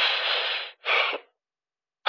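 A man's voice imitating a goose's hiss: a long, breathy, unpitched hiss followed at once by a shorter one.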